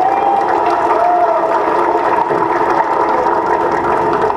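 Audience applause and crowd noise, a dense steady clatter over a faint background hum.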